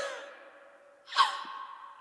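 A woman's laugh trailing off, then after a short pause a long breathy sigh that starts strong and fades away.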